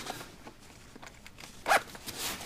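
Soft rustling of clothing and leather as a winter ankle boot is pulled off a foot, with one short, sharp rasp near the end.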